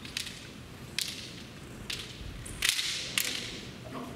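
Bamboo shinai clacking against each other in a kendo exchange: sharp strikes roughly once a second, the loudest cluster near the end with a dull thud under it.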